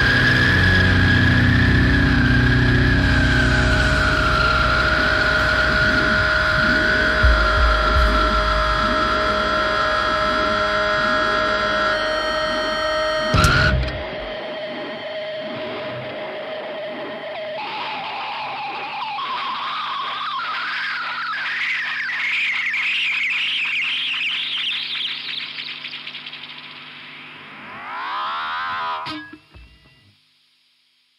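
A distorted rock band plays the last sustained chord of a song under a high, wavering held tone, then the drums and bass stop suddenly about 13 seconds in. An electronic effects drone rings on alone, with a tone rising slowly in pitch for several seconds and a short sweep near the end before it cuts off.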